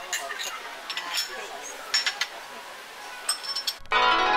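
Small porcelain tea cups clinking lightly against each other and a bamboo tea tray as they are handled and set down, several short ringing clinks. Plucked zither music cuts in just before the end.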